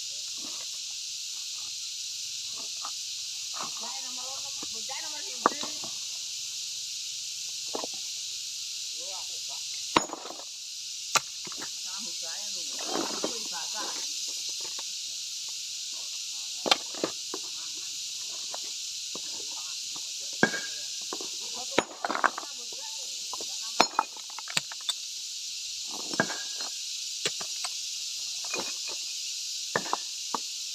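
Hard stone slabs knocking and clinking against each other as they are pried apart and shifted by hand, about a dozen sharp knocks spread irregularly over a steady high hiss.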